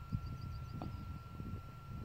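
Faint distant gunfire from a military firing range: a soft, muffled report just under a second in, over a low outdoor rumble.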